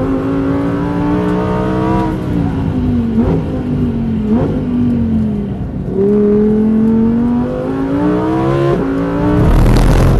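Lamborghini Huracan Tecnica's naturally aspirated V10, heard from inside the cabin on track: the engine note falls under braking with two short blips on downshifts, then climbs hard out of the corner with an upshift about nine seconds in. A loud rushing burst comes right at the end.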